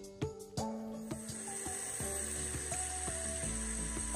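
Shrimp and vegetable stir fry sizzling in a skillet, with a few sharp taps of a spatula against the pan in the first second. From about a second in the sizzle turns into a steady hiss.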